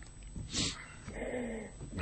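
A quiet gap in talk: a brief breath noise about half a second in, then a faint, low murmured voice.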